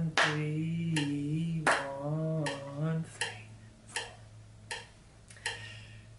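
A man's hands clapping the rhythm of a simple tune, one sharp clap roughly every three-quarters of a second. For the first three seconds he counts the beats aloud in drawn-out syllables, and after that the claps go on alone, softer.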